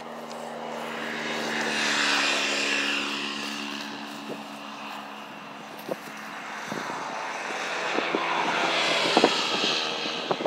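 A steady engine drone swells and fades twice. Several sharp clicks and knocks come in the second half.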